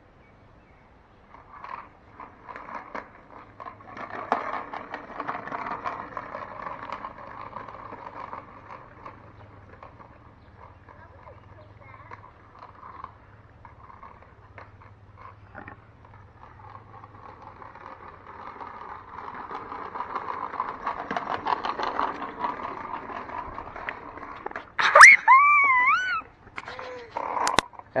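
Small wheels of children's ride-on toys rolling over a concrete driveway, swelling and fading twice as they pass. Near the end comes a loud, high, wavering cry.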